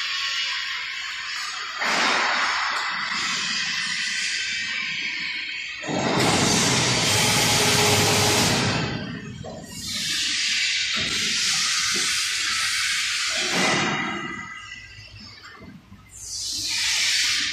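Vacuum frying machine hissing in several long rushing surges, each a few seconds long; the loudest and deepest surge comes about six to nine seconds in, and the sound fades near the end.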